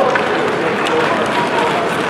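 Ice hockey play: skates scraping on the ice and a few sharp stick or puck clicks, over a steady wash of rink noise.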